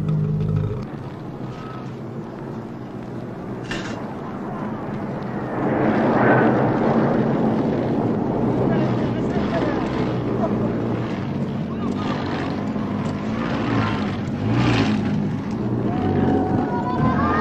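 Small three-wheeled motor truck's engine running as it drives along a dirt track, louder from about five seconds in, with voices alongside.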